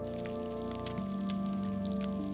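Burger patties topped with cheese sizzling on a flat-top griddle, with sharp crackles throughout, over background music of sustained notes.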